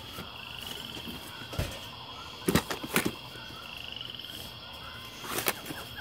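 Vinyl LP jackets being flipped through in a plastic crate, with sharp knocks and slaps of the sleeves, the loudest two around the middle and more near the end. Behind it a steady high buzz runs on, and a rapid high trill sounds twice.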